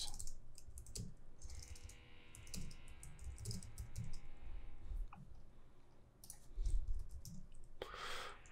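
Computer keyboard typing: irregular key clicks in quick runs with short pauses.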